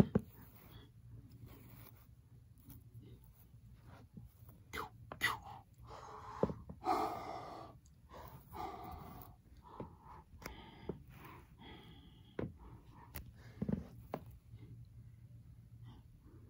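Quiet breathy voice sounds and gasps, the mouth noises of someone acting out a fight with toys, loudest about six to nine seconds in, with a few sharp clicks of plastic toy figures being handled.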